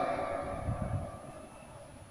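The priest's amplified voice ringing on in the church after his last word. It lingers as a steady tone and fades away over about a second and a half.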